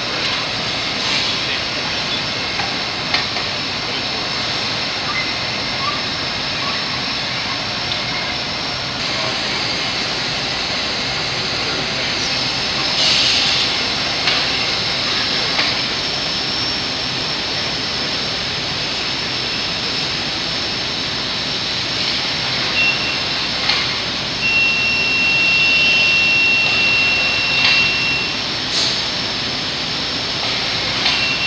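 Steady machine hum of a factory floor with scattered short clicks and knocks. A high, steady beep-like tone sounds briefly about two-thirds of the way through, then holds for a few seconds, and comes back at the very end.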